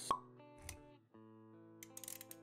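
Intro jingle with sound effects: a sharp pop just after the start, a short whoosh a little past half a second, a brief break, then held musical notes.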